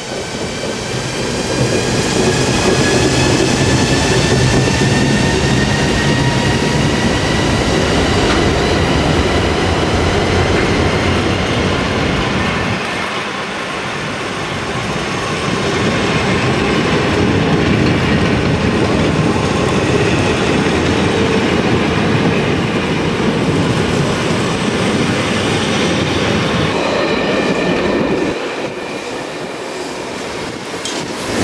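A long passenger train rolling past close by as it gathers speed, with the steady rumble and clickety-clack of locomotive and coach wheels on the rails. A whine rises in pitch over the first several seconds, and the noise dips briefly about halfway through.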